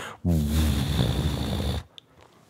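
A man vocally imitating the muffled, boomy bass of a car subwoofer driving by: a low, throaty droning hum for about a second and a half that stops abruptly.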